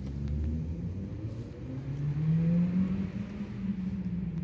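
A low engine hum whose pitch slowly rises, growing loudest a little past the middle before easing off.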